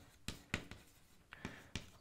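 Chalk writing on a blackboard: a quick series of short, faint taps and scrapes as letters are written.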